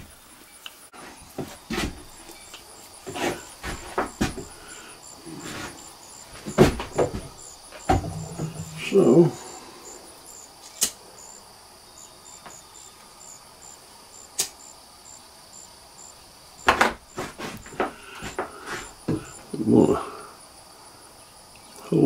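Scattered clicks and knocks of a muzzleloading rifle and gear being handled on a wooden shooting bench, with a brief murmur of voice now and then. Behind them runs steady, high-pitched, rhythmic chirping of crickets.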